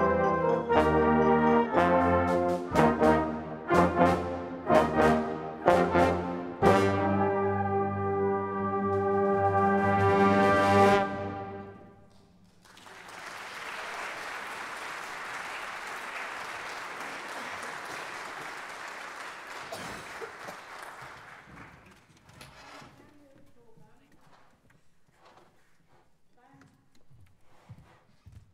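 A brass band ends a piece with a run of short accented chords, then a final held chord that swells and cuts off sharply. Audience applause follows for about ten seconds and dies away.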